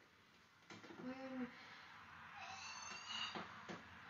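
A short, low "hmm" hum from a woman thinking about a second in, then a faint, high-pitched squeak near three seconds and a couple of small clicks.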